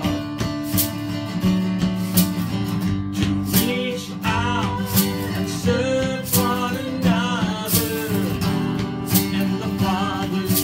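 A man singing a song while strumming an acoustic guitar in a steady rhythm.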